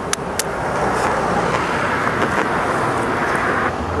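A raw egg knocked against a frozen, snow-dusted ledge to crack it: two sharp taps right at the start, then faint clicks as the shell is pulled apart. Steady city traffic noise runs underneath and drops away shortly before the end.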